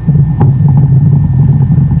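Amplified muscle sound (mechanomyogram) of contracting muscles during movement: a steady low rumble, with a single click about half a second in.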